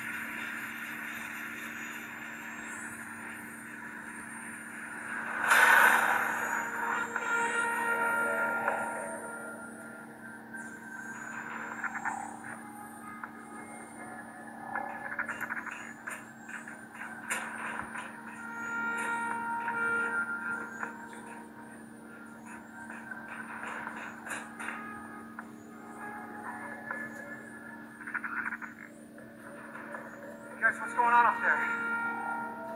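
A film soundtrack, music and effects, plays through an HP laptop's speakers over a steady low hum. There is one loud noisy burst about five and a half seconds in.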